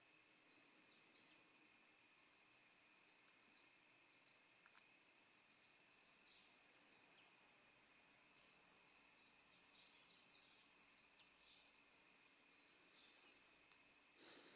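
Near silence, with faint short high chirps scattered through it and a faint steady high whine underneath.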